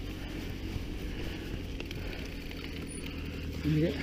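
Decathlon E-ST 520 mountain eBike rolling along a rough lane: steady low rumble of tyres and wind on the microphone, with a brief vocal sound near the end.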